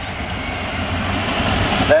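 Sprint car V8 engine running at low revs as the car rolls slowly under caution, the steady rumble slowly getting louder.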